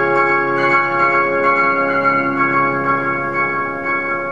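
Grand piano played solo: a held chord keeps ringing while fresh notes are struck about once a second, the sound easing slightly toward the end.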